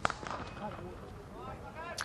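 A cricket bat striking the ball: one sharp crack right at the start, followed by faint stadium crowd noise with distant voices.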